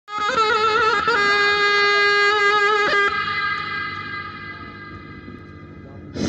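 Zurna, the Turkish double-reed shawm, playing a loud, bright phrase: quick trilled ornaments, then a long held note, then a short run. It stops about three seconds in and fades away.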